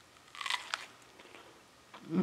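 A mouthful of strawberry being bitten and chewed close to the microphone: one short wet, crunchy burst about half a second in, with two sharp clicks, then quiet chewing.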